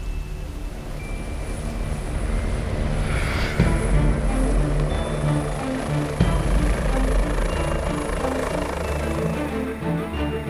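Eurocopter EC145 rescue helicopter running as it lifts off and climbs, its rotor and turbines heard under background music with a steady beat.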